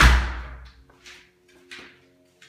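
A door shutting with a loud thud that booms briefly, followed by two soft knocks about a second and a second and a half in.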